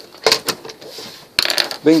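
Plastic back cover of an HP Envy 23 all-in-one computer being pressed into place by hand: a few sharp clicks and knocks, with a quick cluster of them about one and a half seconds in.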